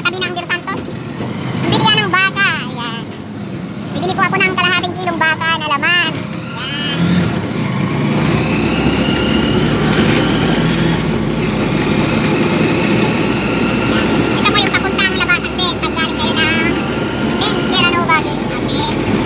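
Road vehicle's engine running while under way, heard from on board, with a faint whine that slowly rises in pitch from about seven seconds in as it picks up speed. Voices are heard over the first six seconds.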